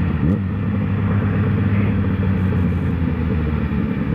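Motorcycle engine running steadily while riding at road speed, heard from a camera on the bike with a rush of wind and road noise over it.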